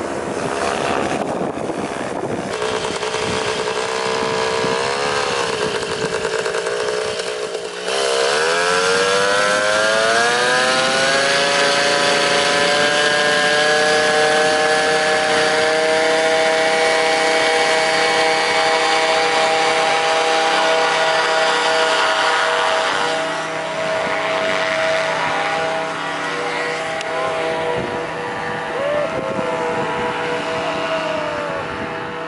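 Paramotor's small two-stroke engine and propeller running; about eight seconds in its pitch climbs as it is throttled up to high power and held steady, then eases back about twenty-three seconds in.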